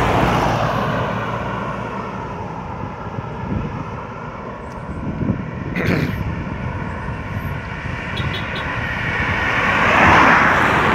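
A car approaching and passing close by on a paved road, its engine and tyre noise building to its loudest at the end. It rises over a steady background hum of traffic, with one sharp click about six seconds in.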